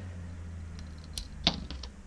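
A few light clicks and taps from small metal parts and hand tools being handled on a workbench, the loudest about one and a half seconds in, over a steady low hum.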